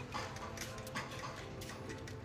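A Shih Tzu licking at the metal ball-valve spout of a gravity-fed water bottle, its tongue making quick irregular ticks, about four to five a second.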